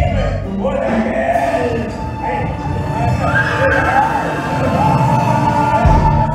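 Live stage-musical performance: singing with the orchestra, and one voice holding a long note from about five seconds in.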